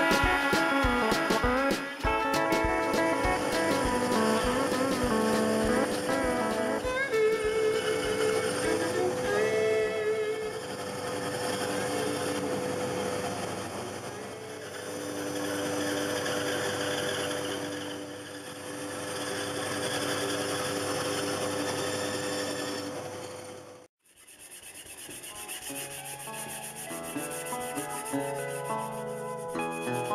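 A band saw running and cutting wood: a steady motor hum under a rasping cut that swells and fades several times. It stops abruptly about six seconds before the end. Background music plays over the opening stretch and again after the saw stops.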